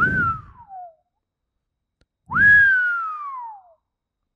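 A man whistling twice through his lips: each whistle jumps up and then slides down in pitch, the first short near the start, the second longer about halfway in.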